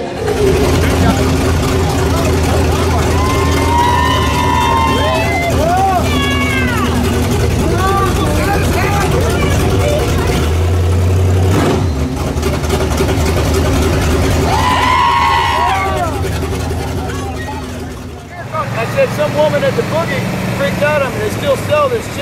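A vehicle engine running steadily while people whoop and call out over it, twice in loud bursts. A few seconds before the end the sound changes to a different engine running under people talking.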